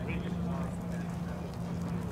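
Steady low hum with faint, indistinct background voices; no distinct event.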